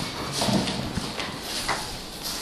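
A few light knocks and rustling: handling noise in a classroom as something is passed between students.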